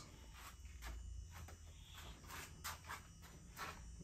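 Faint, scattered light taps and clicks of fingers on a front-loading washing machine's control panel, pressing at the power button too lightly to switch it on.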